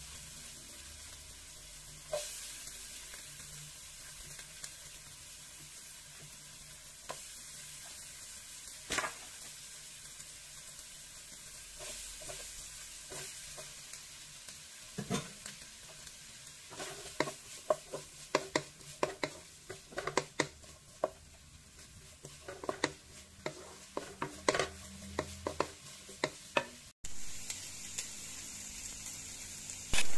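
Diced onion and pork sizzling in butter in a nonstick pan, a steady hiss. A few knocks come in the first half, then about halfway through a wooden spatula stirring the pan makes a run of quick clicks and scrapes.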